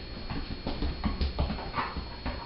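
A dog's nails tapping on a tile floor as it steps its hind legs around a bowl, about half a dozen light clicks, with a brief faint whimper near the end.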